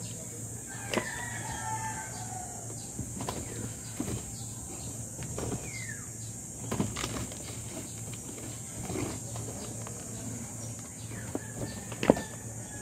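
Gloved hands scooping damp compost off a roof and dropping it into a plastic bin: scattered soft knocks and rustles. A few short bird calls sound in the background.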